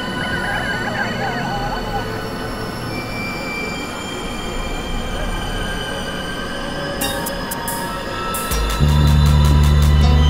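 Several experimental electronic music tracks layered and playing at once: a dense wash of steady drones and held tones, with a warbling high line in the first two seconds. A run of rapid clicks starts about seven seconds in, and a loud low bass drone comes in near the end.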